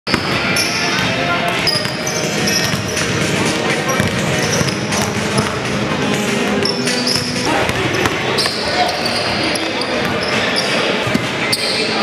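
Basketball warmup noise on a hardwood gym court: many basketballs bouncing at irregular intervals, short high squeaks of sneakers on the floor, and a background of people talking.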